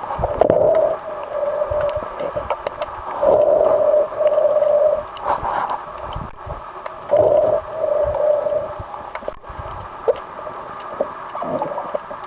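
Underwater sound under a pontoon boat: gurgling water with scattered clicks and knocks, and six short held mid-pitched tones, each under a second long, coming in pairs in the first half and again about seven seconds in.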